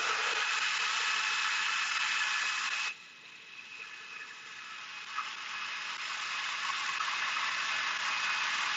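NutriBullet Pro 900-watt personal blender running, its motor whining steadily as it blends fruit and beets into a smoothie. About three seconds in the sound drops sharply, then gradually builds back up to full level.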